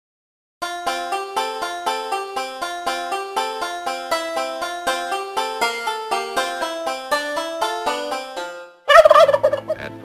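A tune of quick plucked-string notes plays for about eight seconds. It stops, and near the end a tom turkey gobbles once, loudly, as part of its strutting display.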